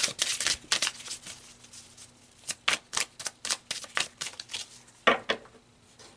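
A deck of oracle cards being shuffled by hand: quick, irregular card snaps and slaps, pausing around two seconds in and then picking up again, with one fuller slap about five seconds in.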